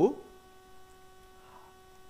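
Faint steady electrical hum made of several steady tones, picked up on the recording, after the last spoken word fades out at the very start.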